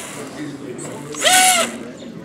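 A person's short, high-pitched whoop about halfway through, rising then falling in pitch, over quieter room noise.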